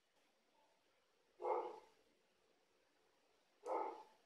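A dog barking twice: two short barks, the first about a second and a half in, the second near the end.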